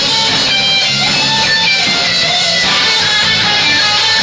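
Live band music: electric guitars strummed loud and steady, with held melodic notes.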